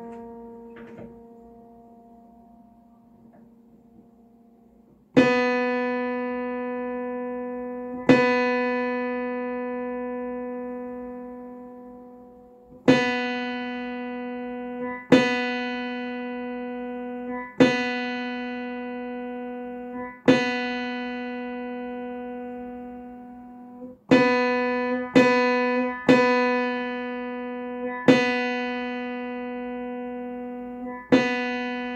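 Upright piano being tuned: one mid-range note is struck again and again, about ten times, and each strike rings and fades while the tuning lever works the pin. The first few seconds hold only the fading tail of an earlier strike. Near the end the strikes come faster, roughly one a second.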